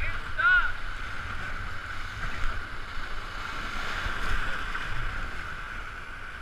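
Rushing whitewater of a river in flood around an inflatable raft, a steady hiss, with rumbling wind buffeting on the microphone. A short rising-and-falling vocal cry about half a second in.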